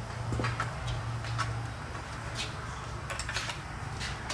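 Stihl MS 194 T top-handle chainsaw being set into a handlebar-front carrier mount on a dirt bike: a handful of light clicks and knocks, with a quick cluster about three seconds in. A steady low hum runs underneath.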